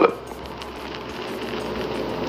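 A pause in the speech: steady hiss-like background noise with a faint low hum, slowly growing louder.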